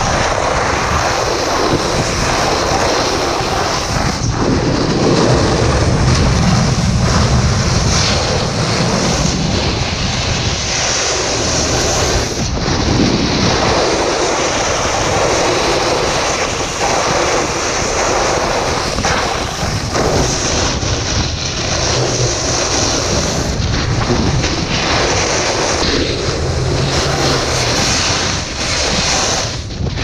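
Wind rushing over an action camera's microphone and a snowboard scraping over hard, icy snow while riding down a piste. Loud and steady, with brief dips every few seconds.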